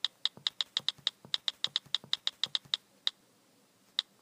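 Computer keyboard keystrokes typing in a quick run of sharp clicks, about six a second, ending near three seconds in, with one more single keystroke shortly after: a typing sound effect.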